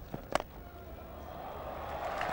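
A cricket bat strikes the ball once with a sharp crack about a third of a second in, a drive through the covers for four. Crowd applause then swells steadily.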